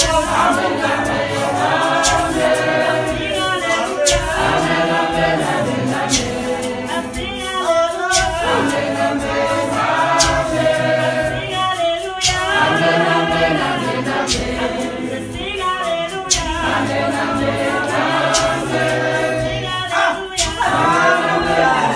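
A Zion church congregation singing gospel as a choir of men's and women's voices with no instruments, over sharp percussive knocks that recur roughly every two seconds.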